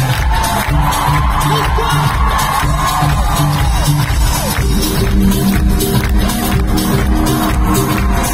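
Live electronic dance-pop music played loud over an arena sound system, with a steady pulsing beat and heavy bass, heard from among the audience. A sustained synth chord comes in about halfway through.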